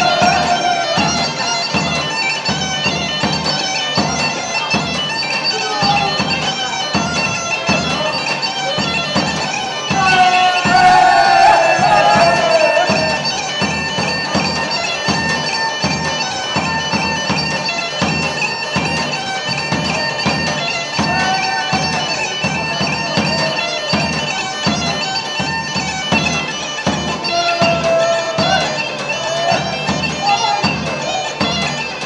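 Greek folk dance music: a bagpipe plays a wavering melody over its steady drone, with an even drum beat underneath.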